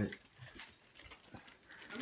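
Faint handling sounds of a zip-top plastic bag full of quarters being lifted: a few soft clicks and rustles.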